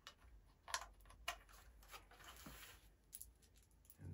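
Small hard-plastic toy parts being handled and fitted into place: a few light clicks, about a second in and again near three seconds, over near silence.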